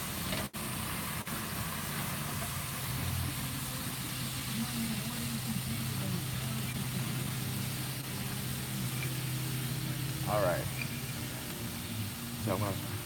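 A steady low mechanical hum, engine-like, over an even hiss, with a short voice breaking in near the end.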